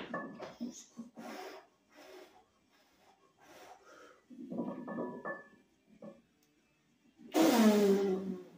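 Short sharp breaths and strained grunts from a lifter squatting 405 lb, ending in a loud grunt that falls in pitch.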